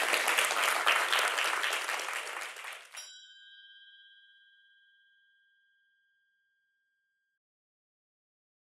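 Audience applause that cuts off abruptly about three seconds in, followed by a single bright chime that rings on and fades away over about four seconds.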